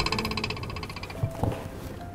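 A rapid, evenly pulsed croaking buzz that lasts about a second and stops, followed by a faint steady tone.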